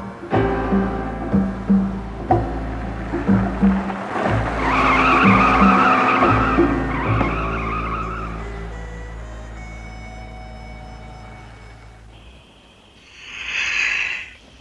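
A car engine running along the road while the tyres squeal through a bend, in two stretches from about four and a half to eight seconds, over a dramatic music score. The engine fades away toward the end, and a breathy gasp comes near the close.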